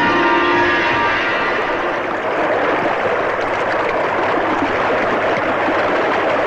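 Film-song music ends about a second in, giving way to a steady, loud crowd noise with no tune.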